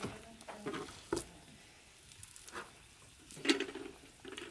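Hands kneading a large mound of bread dough in a glazed earthenware bowl: a handful of soft, scattered pats and squishes of dough, with a quiet stretch midway.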